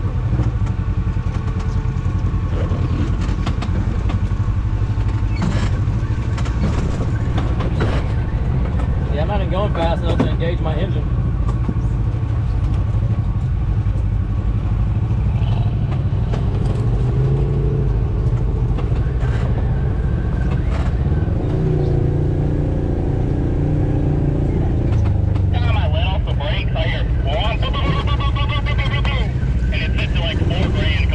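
Side-by-side UTV engine running steadily at low speed while the machine crawls over a rocky, rutted dirt trail.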